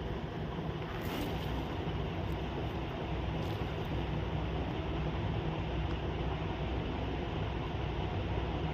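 Steady low rumbling background noise, with a few faint soft rustles of a hand working damp maize flour and water in a steel bowl.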